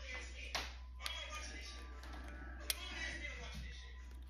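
Light clicks and taps of a small pry tool against the plastic shell of a 2010 Acura MDX key fob remote as it is worked apart, a few scattered clicks with the sharpest about two and a half seconds in.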